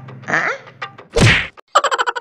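A loud comic whack sound effect with a falling pitch, about a second in, followed by a fast string of tuned pulses, about ten a second, fading away like a cartoon stinger.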